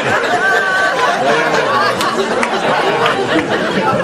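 Several people talking over one another in a steady hubbub of overlapping chatter.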